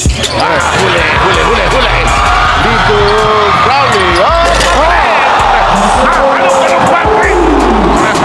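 Basketball being dribbled on a hardwood arena court, under background music.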